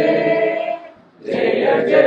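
A group of people singing together in unison, with a short pause about a second in.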